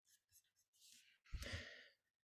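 Near silence where a webinar presenter's audio feed has dropped out, broken about a second and a half in by one short, soft breath or sigh.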